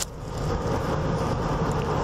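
Ford patrol vehicle's engine and road noise heard steadily inside the cabin while it is driven in pursuit.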